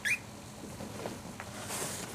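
A tiny puppy playing with a toy: one short, high squeak that rises in pitch at the start, then soft scuffling and a brief rustle of fabric near the end.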